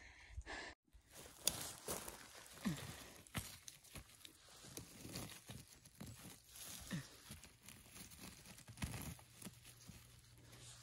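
Faint irregular rustling and crackling of grass, moss and pine litter as a gloved hand pulls sheep polypore mushrooms from the forest floor.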